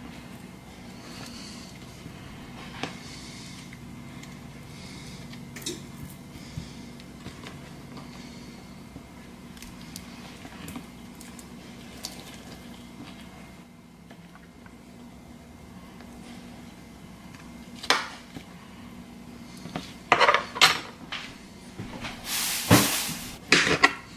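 A metal spoon scraping and tapping on avocado and a plastic cutting board as the flesh is scooped from the peel, over a steady low hum. In the last few seconds come louder knocks and a clatter of metal utensils on the board as the spoon is set down and a knife taken up.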